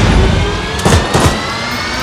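Film-trailer action sound effects: a sharp hit at the start and two more about a second in, under a rising whine that climbs slowly throughout.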